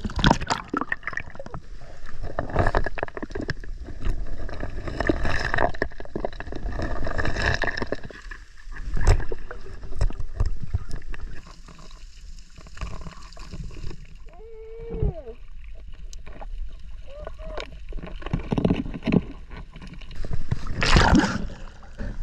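Sea water sloshing and splashing around an action camera held at the waterline. Through the middle stretch the sound turns quieter and duller while the camera is underwater, and a loud splash comes near the end.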